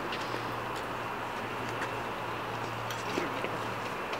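Steady outdoor background noise with a low, even hum that cuts off near the end, and a few faint clicks.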